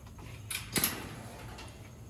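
Metal wire-panel kennel gate and its latch clanking as it is handled: two sharp clanks, the second and louder just under a second in.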